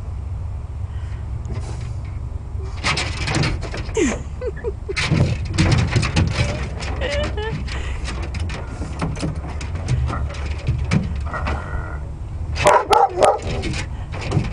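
A dog giving a few sharp barks and yips near the end, reacting to cigar smoke blown at it, with a man laughing about four seconds in, over a steady low rumble.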